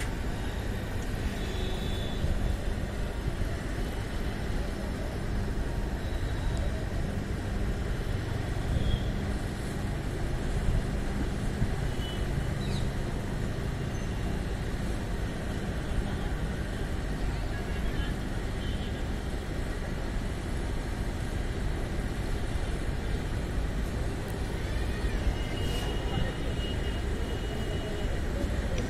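Passenger coaches of an express train rolling slowly past on the next track, with a steady low rumble of wheels on rails. The train is slowing after an emergency chain pull.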